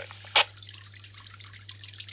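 Brief burst of squelch noise from a QYT mobile transceiver's speaker as the distant station unkeys at the end of his over. It is followed by faint scattered crackle over a steady low hum.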